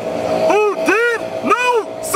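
A man's voice speaking in a rising and falling pitch, with road traffic passing behind.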